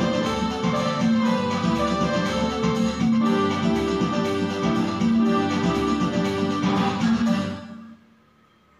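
Portable electronic keyboard playing a melody over a steady beat with a low bass line; the piece ends and the sound dies away near the end.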